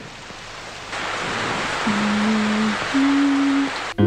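Heavy rain pouring down, growing louder about a second in, with two long low steady tones, one after the other, the second slightly higher.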